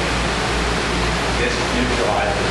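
Steady rushing water from an aquaponics system's spray and flow, an even hiss with a low rumble beneath it, with faint talk underneath.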